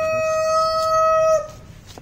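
A rooster crowing: the long, steady held note at the end of its crow, loud, cutting off about a second and a half in.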